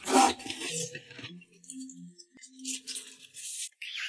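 Noodles slurped up from a pot: a short, sharp slurp right at the start, the loudest sound, and a longer one in the last second. Between them come a few short, steady low tones.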